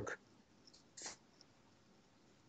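Near silence in a pause between a man's spoken phrases, with a short faint breath about a second in.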